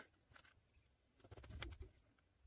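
Near silence with faint clicks of a small wired part and a soldering iron being handled on a work mat, and a brief faint low sound about a second and a half in.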